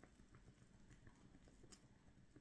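Near silence with a few faint, scattered crackles from a burning wooden splinter.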